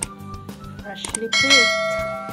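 A bright bell-like ding starts about one and a half seconds in and rings on, slowly dying away. It is the notification-bell sound effect of a subscribe-button animation, heard over steady background music.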